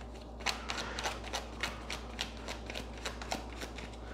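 A tarot deck being shuffled by hand: a steady run of soft, crisp card flicks, about five a second.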